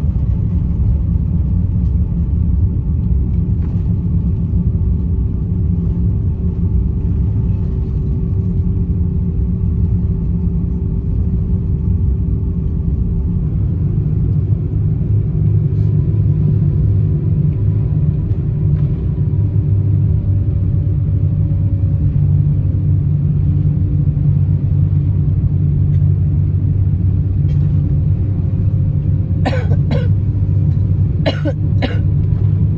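Cabin noise of an Airbus A350-1000 taxiing: a steady low rumble with engine hum tones, growing a little heavier in the second half.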